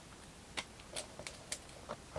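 Faint, sparse clicks and light taps of trading cards being handled and set down on a table, about five over two seconds.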